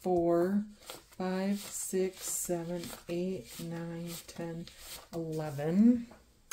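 A woman's voice counting aloud, one number after another, about ten in all.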